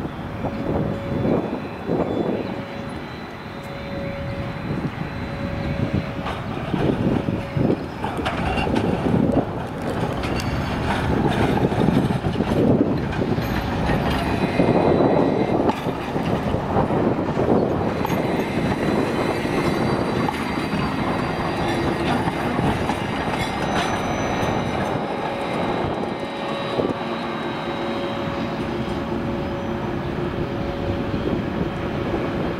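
A three-section low-floor articulated tram moving off and passing close by: its wheels rumble on the rails, with a few clicks over rail joints, loudest about halfway through. It then runs on at a greater distance with a faint steady tone.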